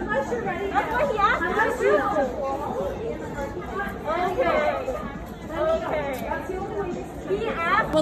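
Several women's voices talking over one another in an argument, with no other distinct sound.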